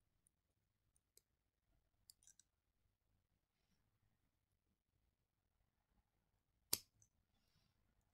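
Faint clicks of small jewellery pliers working a thin metal headpin into a loop, with one sharp, louder click near the end.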